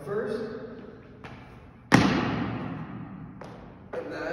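Sneakers landing on a hardwood gym floor after a leap: one loud thud about two seconds in that rings on in a reverberant court, with lighter footfalls before and after it.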